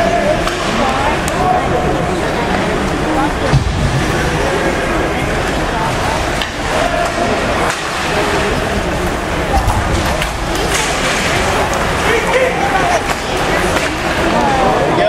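Ice-rink background during a hockey scrimmage: spectators chatting in the stands over the steady scrape of skates on the ice, with a few sharp clacks of sticks and puck.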